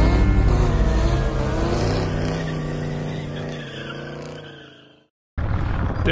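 Car engine revving, its pitch rising and falling, then fading away and stopping about five seconds in.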